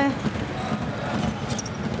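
Indoor basketball hall ambience, with a few knocks of basketballs landing on the hardwood court about one and a half seconds in.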